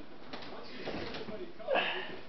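A toddler's voice: soft babbling, then a short, louder shout near the end.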